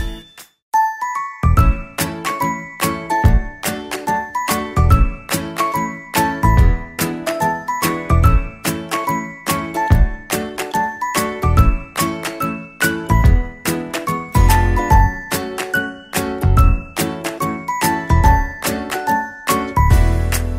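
Background music: a light tune of bell-like notes over a steady low beat, starting up after a short break about a second in.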